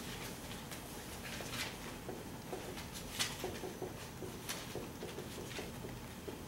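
Dry-erase marker writing on a whiteboard: a scatter of short scratchy strokes and small squeaks over faint room tone, the loudest stroke about three seconds in.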